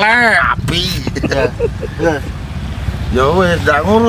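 Men talking and laughing over a steady low rumble.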